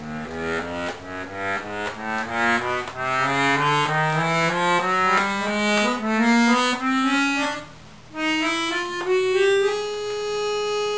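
Bass side of a Giulietti free-bass (C-system chromatic) accordion playing a rising run of single bass notes, climbing step by step from low up into a higher range. There is a short break about eight seconds in, and a higher note is held at the end. It shows the free-bass side's wide range of single bass notes.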